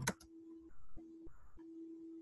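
A steady low electronic hum on the video-call audio that cuts out briefly twice. A couple of keyboard clicks come at the very start.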